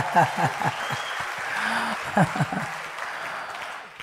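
A congregation applauding, with voices mixed in; the clapping dies away near the end.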